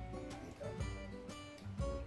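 Background music: an acoustic guitar playing plucked notes.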